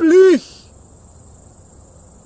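Insects in summer grass chirring steadily in a high pitch, after a short spoken syllable from a man in the first half second.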